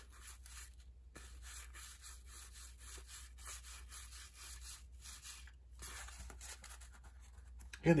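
1984 Donruss baseball cards being thumbed and slid through the hands: soft rustling of cardboard rubbing on cardboard with faint light clicks, over a steady low hum.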